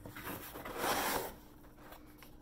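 Cardboard mailer box being opened by hand: its flap rubs and scrapes against the box in one short scratchy rustle about a second in, with a few light taps of handling before it.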